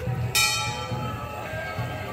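A single strike on a metal bell-like instrument about a third of a second in, ringing on with many clear tones that fade over about a second, over a low background hum.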